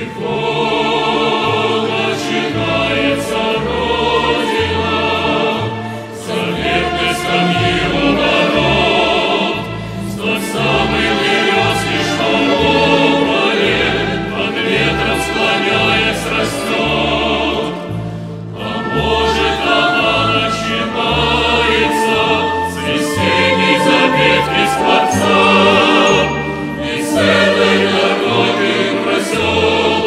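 Mixed choir of men's and women's voices singing a slow song in Russian over an instrumental accompaniment with a moving bass line, with short breaths between phrases.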